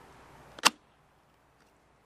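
A single sharp metallic click about two-thirds of a second in, as the aluminium seat post is seated between the two ridged inside pieces of a clamshell saddle mount.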